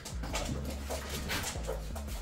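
A pet dog making short, irregular sounds close by.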